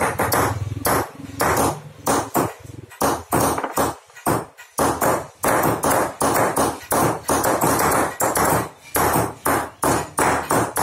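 Hand hammers striking steel chisels into a brass sheet as several craftsmen engrave it: a quick, uneven run of sharp metallic strikes, about three a second, each with a short ring. The strokes thin out briefly about four seconds in.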